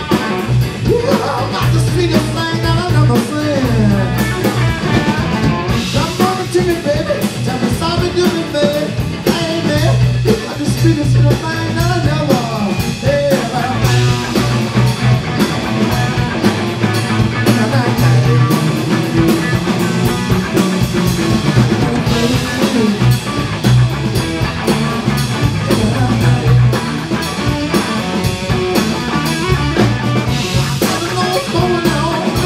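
Live blues band playing: two electric guitars, bass and a drum kit, with a lead line of bent notes running through.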